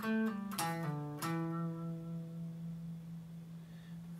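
Electric guitar playing the tail of a pentatonic lead lick: a few quick picked single notes stepping down in pitch, then one low note left ringing and slowly fading.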